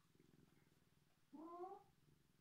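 A domestic cat purring faintly up close, with one short meow about a second and a half in.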